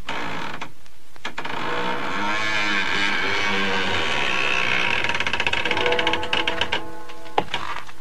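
Eerie sound effects from a 1960s horror spoken-word record: a machine-like drone with tones that waver up and down, and a fast ratcheting rattle building in the middle.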